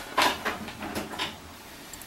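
A few brief rustles and light knocks: handling noise as a Cat6 Ethernet cable is plugged in at a network rack, with clothing brushing close to the microphone.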